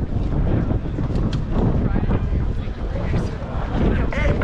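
Wind buffeting the microphone, a steady loud low rumble, over faint voices in a crowd.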